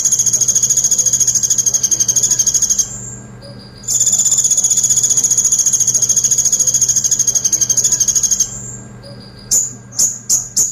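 Male Van Hasselt's sunbird singing a rapid-fire, high-pitched trill, the song that keepers call 'tembakan pelatuk' (woodpecker shots). It comes in two long bursts, the second starting a second after the first stops, then a few short sharp chirps near the end.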